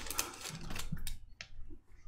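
Foil trading-card pack wrapper rustling as it is pulled off, then a few light clicks as the stack of glossy chrome baseball cards is handled and thumbed through.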